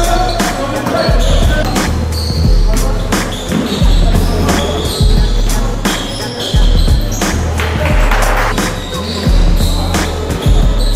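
Background music with a heavy, regular bass beat, laid over game sound from a gym: a basketball bouncing on a wooden floor.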